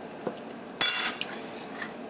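A metal spoon clinks once against kitchenware about a second in, with a short bright ring. A faint tap comes just before it.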